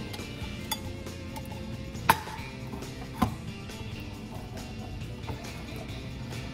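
Three sharp knocks and clinks of kitchen tools on the counter while a lemon is cut and juiced on a metal hand-held lemon squeezer, the loudest about two seconds in. Soft background music plays underneath.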